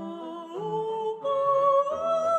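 Virtual (sampled) soprano voice singing a wordless melody without text, held notes climbing in steps, over soft orchestral accompaniment.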